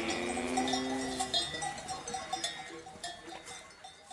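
The closing jingle dying away: a held final note fades out in the first second or so, with bell-like clinking and twinkling under it. The whole sound fades gradually to near silence.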